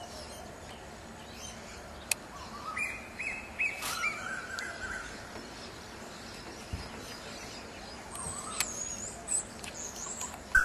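Wild birds calling: a quick run of short, bending call notes about three to five seconds in, then a high, thin, wavering whistle near the end, over a steady background hiss.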